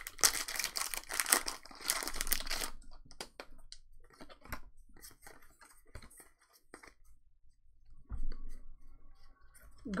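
Foil booster-pack wrapper of a Pokémon card pack being torn open and crinkled for the first few seconds, then soft scattered clicks of the trading cards being handled and slid through the hands.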